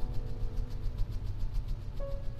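A low, steady rumbling drone with a few soft, held tones above it, part of an ambient music underscore.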